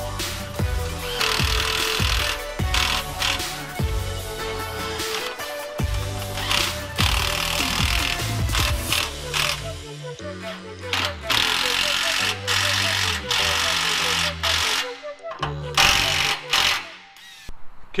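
Instrumental background music with a steady beat and bass line.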